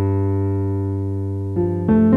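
Background music: a held chord slowly fades, then new notes come in near the end.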